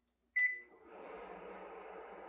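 A single short keypad beep from a built-in microwave oven as it is started, followed by the microwave's steady running hum.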